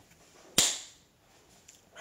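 A single sharp click about half a second in, with a short hissy tail, in a pause between speech.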